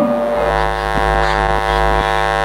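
A steady, held drone at one unchanging pitch, rich in overtones, with a strong low hum underneath.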